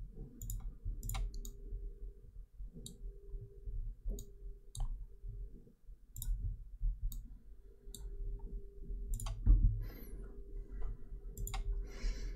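Computer mouse buttons clicking at irregular intervals, singly and in quick pairs, over a faint steady hum.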